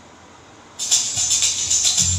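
A backing music track starts abruptly about a second in, after faint room hiss: a quick, even high percussion pattern, with a bass line coming in just after.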